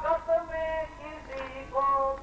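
A group of men and women singing a Hindu devotional chant together, in long held melodic notes.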